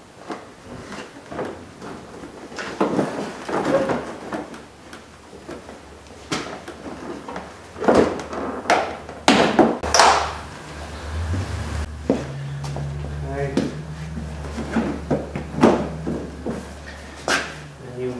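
Plastic car bumper cover and its push clips being fitted by hand: scattered knocks and clicks as the panel is worked and clips are pressed into place, the loudest a little past the middle. A low steady hum sets in about two-thirds of the way through.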